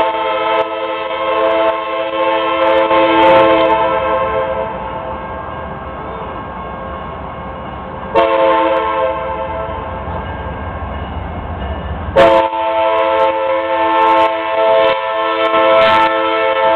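Norfolk Southern diesel locomotive's multi-chime air horn sounding a grade-crossing sequence: a long blast that ends about four seconds in, a shorter blast about eight seconds in, and another long blast starting about twelve seconds in. The low rumble of the approaching locomotive grows between the blasts.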